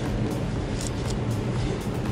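Mercedes-AMG CLS 53's turbocharged inline-six running at low speed, heard from inside the cabin as a steady low drone.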